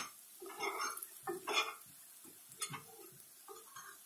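A metal spoon scraping and clinking against a frying pan in a few short, uneven strokes as an egg-and-sausage omelet mixture is stirred so that it does not catch.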